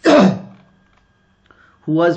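A man clears his throat once, a short loud burst that dies away within half a second; speech resumes near the end.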